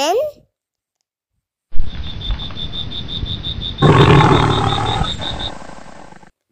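Lion roaring, played as a sound effect: it starts abruptly about two seconds in, swells louder and deeper about a second and a half later, then fades away.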